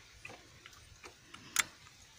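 Light, scattered clicks and ticks of a small hand tool and fingers on the carburetor of a Hero Honda Splendor Plus motorcycle, with one sharper click about one and a half seconds in.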